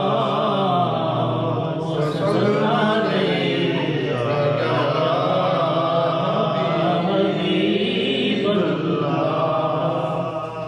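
A man singing a devotional kalam (naat) into a microphone, in long held notes that bend slowly in pitch.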